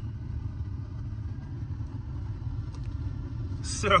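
Low, steady rumble inside a car's cabin.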